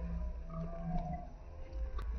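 Wind rumbling on the microphone, with faint drawn-out voices calling now and then.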